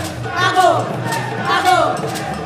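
Live West African brass-band highlife music: steady pulsing bass and percussion strokes, with voices swooping down in pitch about once a second.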